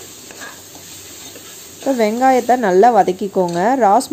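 Onions frying in oil in a pressure cooker, a soft sizzle with a steel ladle stirring through it. A voice comes in over it about two seconds in.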